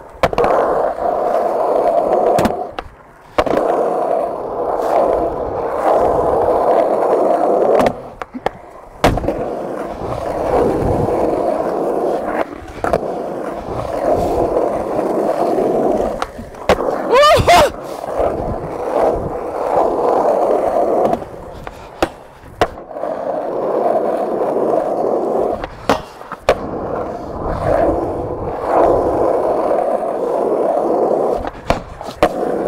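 Skateboard wheels rolling steadily over concrete and asphalt, broken again and again by the sharp snaps of ollies and the clacks of the board landing. A short rising squeal sounds a little past halfway.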